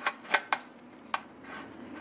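A spatula knocking against a metal baking pan while loosening a baked egg-white shape from its sides: about four short, light clicks in the first second or so.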